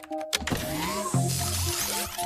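Cartoon sound effect of an electric motor whirring as a robotic fabrication arm moves to build a nanobot, with background music.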